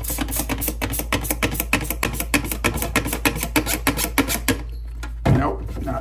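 A trigger spray bottle of Clorox bleach cleaner, its cap broken, pumped rapidly: a quick even run of short squirts and trigger clicks, about six a second, that stops about four and a half seconds in. A single thump follows about five seconds in.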